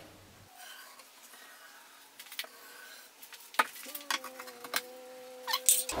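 Light handling knocks and clicks on MDF as the glued front panel is laid onto the box edges, the sharpest about three and a half seconds in, with a steady low hum starting about four seconds in.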